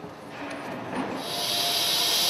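Compressed-air hiss with a faint steady whine from an air-driven tool, building from about a second in, as the engine is turned to move the piston down its cylinder liner.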